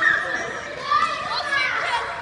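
A group of children shouting and calling out over one another, their high voices rising and falling.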